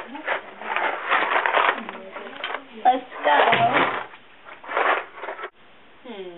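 Indistinct chatter of several voices at a table. It cuts off suddenly about five and a half seconds in.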